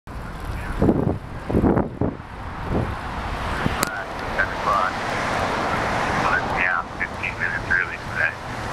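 Wind buffeting the microphone of a bike-mounted camera while riding, with heavy gusts in the first three seconds. From about halfway, a series of short high chirps or squeaks sounds over the wind.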